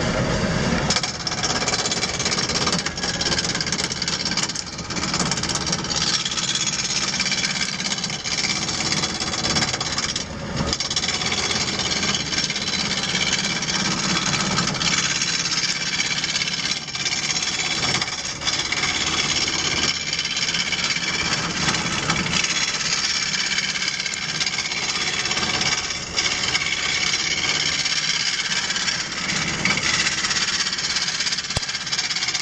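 Wood lathe spinning a baseball bat blank while a hand-held turning tool cuts into the wood: a loud, steady scraping rasp of the cut over the running lathe, dropping briefly a few times.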